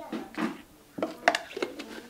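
A few light clicks and knocks of kitchen containers and utensils being handled on a countertop, as a plastic sour cream tub is moved aside after spooning. Most of the knocks come close together about halfway through.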